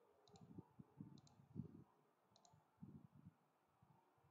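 Faint computer mouse button clicks, three of them, each a quick press-and-release pair, with a few soft low bumps between them; otherwise near silence.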